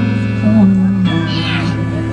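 Live acoustic guitar and voice: the guitar holds low ringing notes, and a brief high, gliding sound that may be vocal comes about halfway through, just after the sung line ends.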